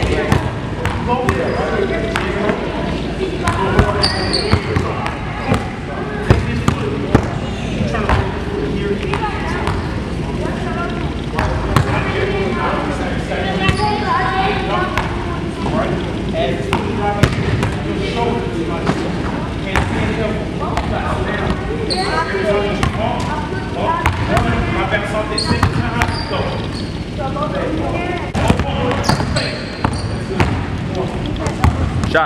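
Basketball dribbled over and over on a hardwood gym floor, with voices talking in the background.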